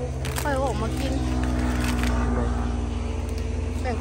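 A motor engine running steadily with a low hum, getting a little louder about a second in. Light rustling of palm fronds being pulled by hand comes over it.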